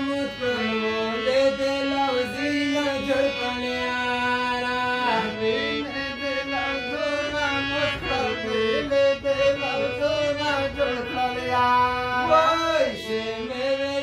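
Harmonium playing a Pashto melody: held reed notes that step from one pitch to the next.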